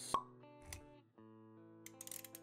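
Quiet intro music of held notes, with one sharp pop just after the start and a soft low thump a little under a second in.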